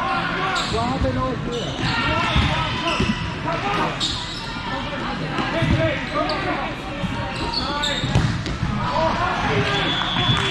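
Echoing din of a busy indoor sports hall: many voices calling and chattering at once, with the thuds of volleyballs being hit and bouncing on hardwood courts every second or two.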